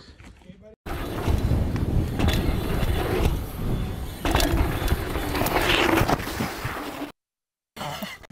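Mountain bike knobby tyres rolling and skidding on hard-packed dirt, with knocks from the bike and heavy wind rumble on the microphone, as the rider jumps through a dirt berm and crashes. The sound cuts off abruptly near the end.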